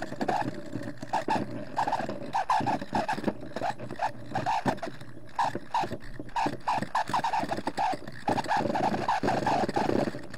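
A rock being rubbed by hand during polishing, giving quick, irregular squeaky scraping strokes.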